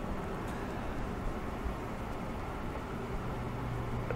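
Steady low-level room noise: an even hiss with a faint low hum underneath.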